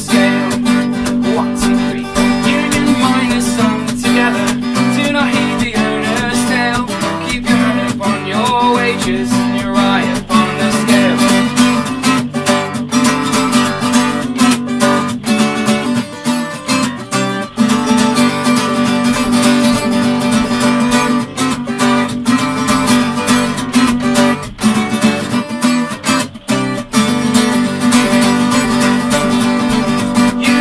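Capoed Yamaha cutaway acoustic guitar strummed steadily through an instrumental break between verses of a folk song.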